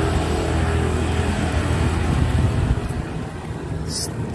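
A vehicle engine running nearby, a steady low hum that fades away about three seconds in.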